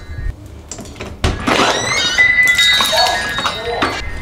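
A sliding patio door being unbarred and opened: a low thunk, then from about a second in a loud stretch of rumbling and squeaking as the door runs along its track.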